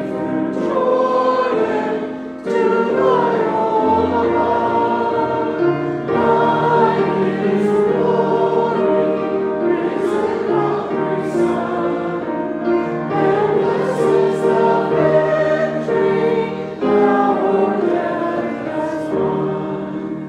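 A group of voices singing a hymn together, in long phrases with short breaks between them about every four to six seconds.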